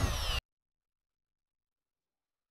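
Power drill winding down with a falling whine after drilling through a board, cut off abruptly less than half a second in; then dead silence.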